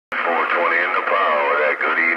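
Speech from a distant station coming through a Stryker CB radio's speaker, the thin radio sound cut off below and above the voice.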